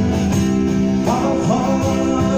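Live small band playing, led by a strummed acoustic guitar with a second guitar beneath it. A sung note comes in about halfway through.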